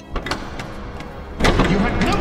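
Armoured men walking off: footsteps with chainmail and plate armour clinking and rustling, getting louder about one and a half seconds in.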